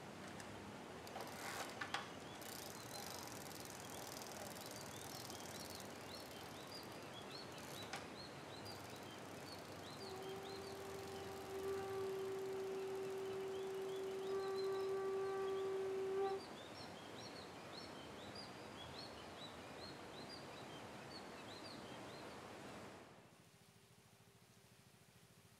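Outdoor ambience of many small birds chirping over a steady rushing background. In the middle a single held tone with overtones sounds for about six seconds. A few sharp clicks come near the start, and the ambience fades out just before the end.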